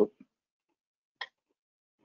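Near silence from a noise-gated microphone, with the end of a spoken word at the very start and a single short click about a second in.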